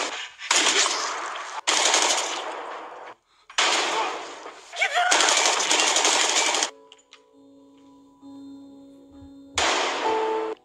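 Gunshots from a TV drama soundtrack: four loud blasts of gunfire in the first seven seconds, each starting sharply and trailing off, then a few seconds of quiet held music tones, and one more gunshot near the end.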